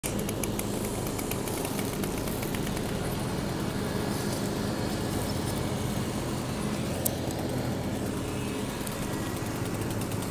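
Gas string trimmer's small engine idling steadily at an even, unchanging speed.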